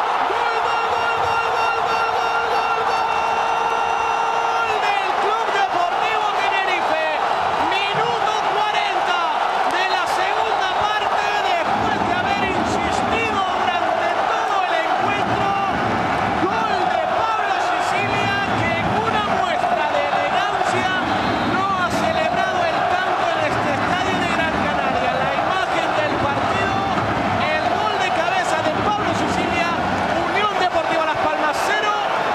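Football stadium crowd cheering and chanting to celebrate a goal, many voices shouting and singing at once. A steady held tone sounds through the first four seconds or so, and the crowd noise grows fuller from about twelve seconds in.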